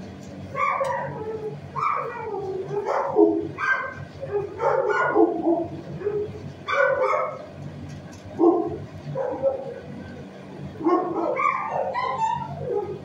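Dog barking repeatedly in a shelter kennel, short barks coming about once or twice a second, over a steady low hum.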